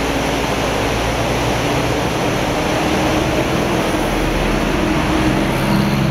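Fast mountain river rapids rushing steadily, an even wash of white-water noise. A faint low hum runs underneath from about two seconds in.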